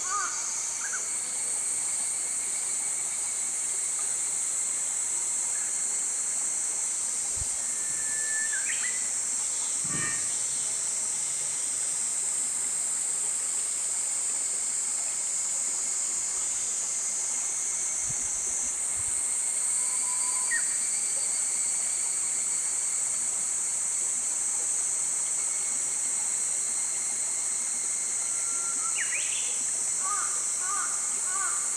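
Steady high-pitched insect chorus, with a few brief bird chirps and some faint low thumps.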